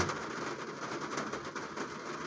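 Faint steady background noise, room tone, with no distinct events.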